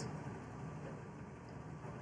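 Room tone in a pause between speech: a faint, steady low hum with no distinct events.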